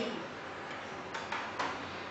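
A few light clicks and knocks of a porcelain cup being picked up and set down on a coffee machine's drip tray, over a faint steady hiss.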